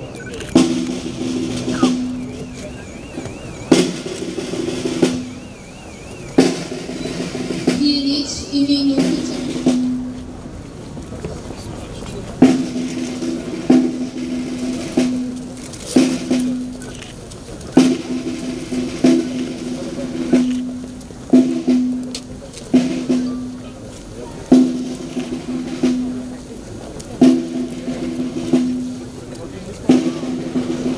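Snare drums playing a roll in short repeated phrases. Each phrase starts with a sharp accented stroke and rings on for about a second, and the phrases recur every one to two seconds.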